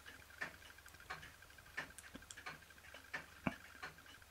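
Märklin toy donkey engine ticking over slowly: faint, sharp clicks at an even pace of about one and a half a second. Its piston and cylinder are, in the owner's view, worn past repair, with most of the steam escaping past the piston.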